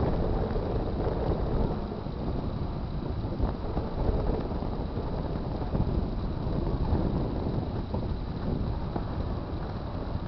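Wind buffeting an outdoor camcorder microphone: a steady, fluttering low rumble with no distinct events.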